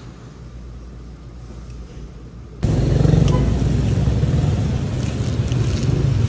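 A low room hum, then street noise with a steady rumble of road traffic that starts suddenly about two and a half seconds in and is much louder.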